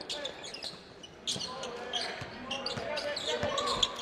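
A basketball dribbled on a hardwood gym floor, a series of short bounces, with voices of players and crowd in the background.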